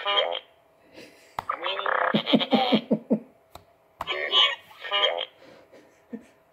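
BB-9E droid sound effects played through the small speaker of a Hasbro Force Link wristband: a rising electronic warble, then a fast run of low burbling pulses that sounds like farting, about two seconds in, with another short electronic burst about four seconds in.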